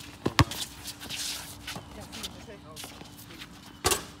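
Basketball bouncing twice on an outdoor hard court early on, with sneakers shuffling as a player drives, then a louder impact near the end as the shot hits the hoop.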